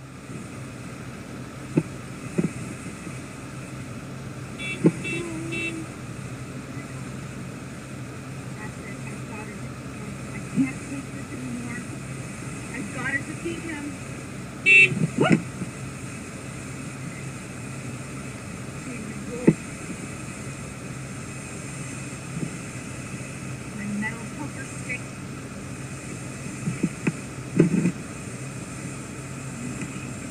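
A video's soundtrack playing through a TV speaker and picked up by a phone: a steady hum with scattered knocks and bumps, three quick short beeps about five seconds in, and a louder beep near the middle.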